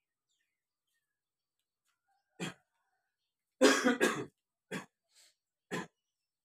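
A person coughing and clearing their throat in short separate bursts. The loudest is a double cough about two-thirds of the way in, with gaps of near silence between the coughs.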